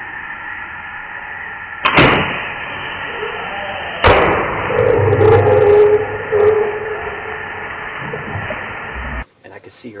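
A compound bow shot at a feral hog: a sharp crack about two seconds in, then a second loud crack about two seconds later, followed by a few seconds of commotion as the hogs run off.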